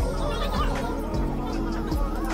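Background music with steady held low notes, soft and without a clear beat, with faint indistinct voices beneath.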